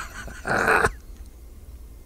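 A man's sharp, breathy intake of air about half a second in, a gasp for breath between fits of laughter.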